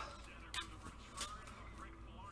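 Quiet, with faint handling noise from a trading card moved in gloved hands: a soft click about half a second in and a faint short squeak a little after a second.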